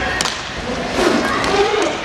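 Inline hockey play in a large hall: sharp clacks of sticks and puck on the rink floor and a thud, with shouting voices from players and spectators echoing around it.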